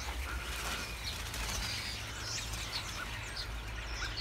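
A large flock of small birds roosting in a hedge, many chirping at once in a continuous chatter.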